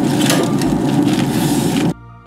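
Chopped vegetables sizzling and crackling in hot olive oil in a cast iron skillet, a dense, steady crackle that cuts off suddenly near the end.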